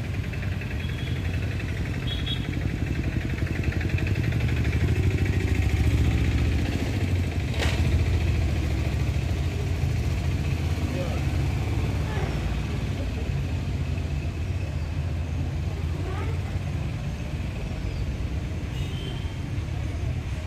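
Outdoor street ambience: a steady low engine rumble with faint voices in the background, and a single sharp click about eight seconds in.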